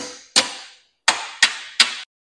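A hammer striking a bolt five times, driving it through a hole in a Yamaha Blaster ATV's steel frame; each blow is sharp and rings out briefly.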